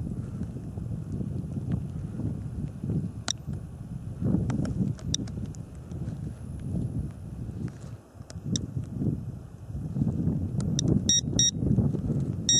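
Wind buffeting the microphone in uneven gusts. A handheld electromagnetic-field meter gives a few faint chirps, then a quick run of short high beeps near the end: its alarm for an electric field above the norm.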